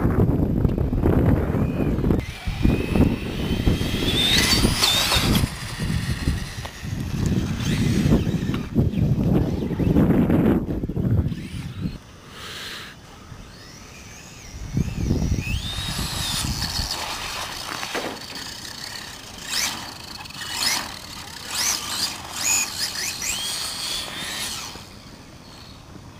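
Radio-controlled cars running on asphalt, their motors whining and gliding up and down in pitch as they speed up, slow and pass. A heavy low rumble fills the first half, and the second half is quieter with repeated short whines.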